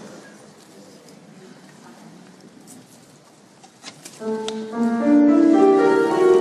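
Quiet concert-hall room tone with a couple of small clicks. About four seconds in, the orchestra of strings and bandoneon starts playing held, overlapping notes.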